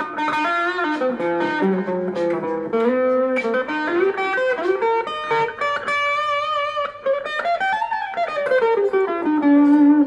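Guild DeArmond Starfire semi-hollow electric guitar played clean through its neck pickup: a jazz-blues passage of single notes and chords. About six seconds in, a held chord wavers in pitch, then a line climbs and falls back down.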